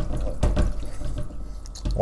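Leftover water dribbling from a portable dishwasher's hoses into a stainless steel sink, with a few sharp knocks as the faucet adapter is handled.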